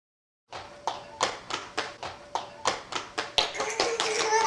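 A small child's running footsteps on a wooden hallway floor: quick sharp steps about three a second, starting about half a second in and growing louder as she comes closer.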